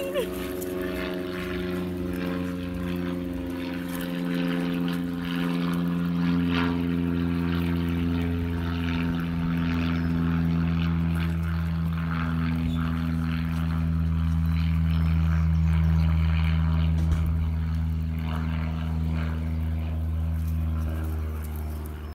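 Propeller plane flying overhead: a steady engine drone that sinks slowly in pitch and grows louder in the second half.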